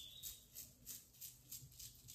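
Faint, quick crackling rasps of hair pulling away from a Velcro hair roller as it is slowly unrolled out of the hair.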